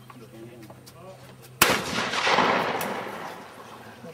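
A single trap shotgun shot, sharp and loud, about one and a half seconds in, followed by about two seconds of rolling noise that swells and then fades away.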